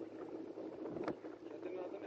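Tractor engine running steadily at a distance while the tractor drives slowly through shallow reservoir water, with a brief sharp sound about a second in.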